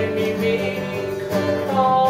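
Two acoustic guitars strumming a slow pop accompaniment, with a man's singing voice finishing a phrase about half a second in while the guitars carry on.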